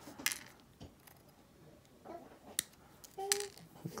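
Hobby sprue clippers snipping grey plastic miniature parts off their sprue: a few sharp, separate snips, one shortly after the start and two more near the end.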